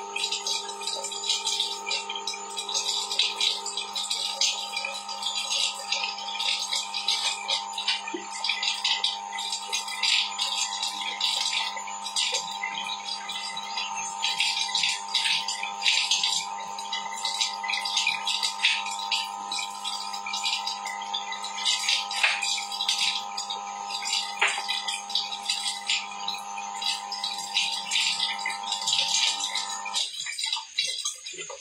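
A steady hum of several fixed pitches with constant light rattling and clicking over it; the hum cuts off suddenly at the very end.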